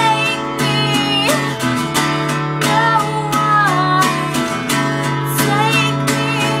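Acoustic guitar strummed steadily, with a woman's voice singing over it in long notes that slide and bend in pitch.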